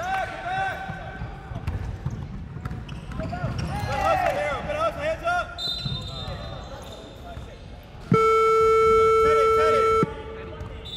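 Basketball shoes squeaking on a hardwood court and a basketball bouncing, then near the end the scoreboard buzzer sounds one long steady blast of about two seconds, the loudest sound here.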